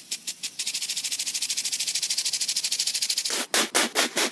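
Impact lawn sprinkler spraying a jet of water and ticking rapidly and evenly, after a few slower ticks at the start. In the last second come about five louder, slower spurts.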